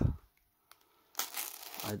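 A short crinkling rustle of a parcel's plastic wrapping, starting just over a second in and lasting under a second.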